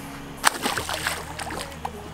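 A southern stingray dropped from a dock splashes into the river about half a second in: one sharp splash followed by a scatter of smaller splashes and drips, over a steady low hum.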